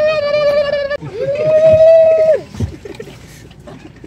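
A person's voice calling out at a turkey in two long held high notes, the second sliding up at the start and down at the end.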